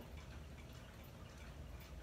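Near silence: quiet room tone with a faint, steady low hum.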